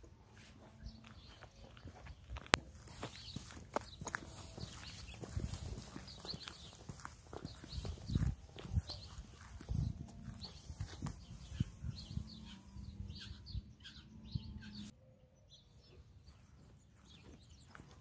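Footsteps of soft-soled sneakers on a concrete boat ramp, an irregular patter of light steps that stops about three seconds before the end.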